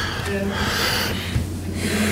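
A woman sighing into a podium microphone: one breathy exhale lasting about a second, over a steady low hum from the sound system.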